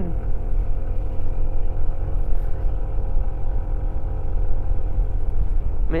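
Yamaha NMAX scooter's single-cylinder engine running steadily under load on a steep uphill climb, over a steady low rumble.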